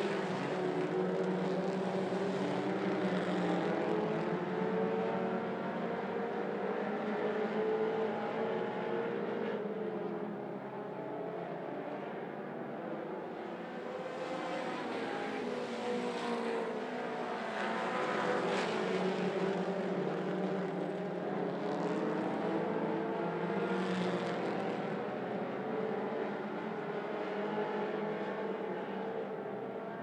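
A field of mini stock race cars running at speed on a dirt oval, several engines overlapping and rising and falling in pitch as the cars come through the turns and pass, with swells as the pack draws nearer.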